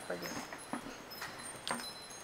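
Scattered short, high tinkling tones ring faintly over quiet room noise, with a couple of light clicks.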